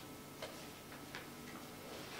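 Quiet room tone with a faint hum and two faint short ticks less than a second apart.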